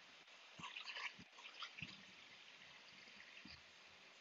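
Near silence: room tone, with a few faint, brief sounds in the first two seconds.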